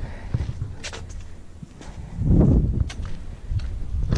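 Footsteps on flagstone paving, with low rumbling wind noise on the microphone that swells briefly a little past the middle.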